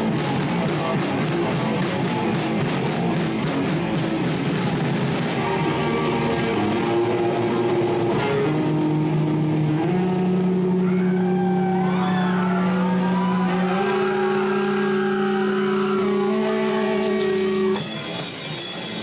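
Live heavy rock band with distorted electric guitar and drum kit. The band plays a fast beat with cymbals for about five seconds, then the drums drop out. The guitar holds long notes that step up in pitch twice, with wavering higher tones over them, until the full band comes crashing back in near the end.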